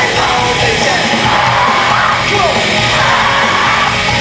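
Pop-punk band playing live at full volume, heard from inside the audience, with voices yelling over the music.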